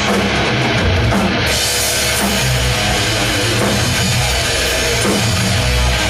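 Live rock band playing loud with electric guitars, bass and drum kit. About one and a half seconds in, the sound turns brighter and fuller.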